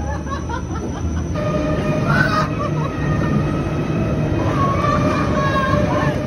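Break Dance fairground ride running: a steady mechanical rumble from the spinning platform, with music and people's voices mixed over it. The sound changes abruptly about a second and a half in.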